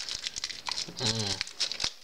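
Thin plastic packaging bag crinkling and rustling in the hands as a small camera battery is taken out of it. A man's voice sounds briefly about a second in.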